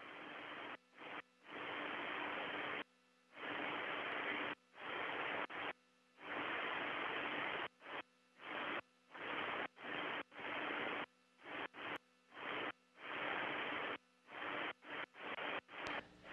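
Bursts of radio static from the Soyuz air-to-ground communications link: a band-limited hiss that keeps cutting in and out in irregular stretches, from a fraction of a second to about two seconds long.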